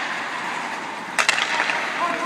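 Hockey skates scraping and carving on rink ice during a practice drill, with two sharp clacks of stick and puck a little past halfway.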